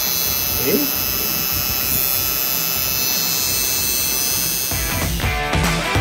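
Coil tattoo machine buzzing steadily while it works ink into skin. Music comes in about five seconds in.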